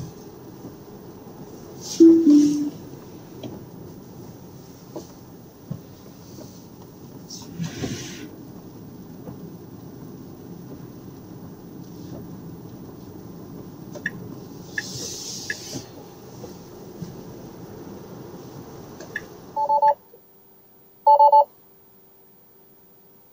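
Steady tyre and road noise inside an electric car's cabin on a wet road, with a short two-note electronic chime about two seconds in. Near the end the road noise stops abruptly and two short electronic beeps sound.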